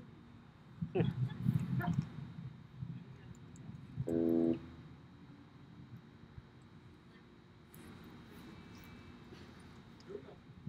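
A lull on an outdoor stage between songs: faint low rumbling and a few small clicks in the first couple of seconds, then one short, steady pitched tone about four seconds in, followed by a quieter background.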